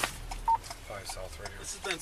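A single short electronic beep about half a second in, preceded by a sharp click, with faint low voices after it.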